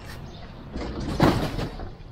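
A cajon shoved onto a heap of cardboard boxes, giving a scraping, rustling slide about a second in.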